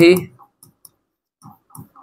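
A spoken word ends, then a few faint, scattered clicks and taps of a pen tip on the writing board as a short expression is written.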